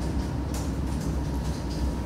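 A pause in speech: a steady low hum with faint room noise, picked up through the courtroom's microphone system.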